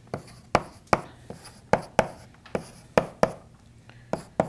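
Chalk on a blackboard writing short numerals: a string of sharp taps, about two or three a second, with light scraping between them.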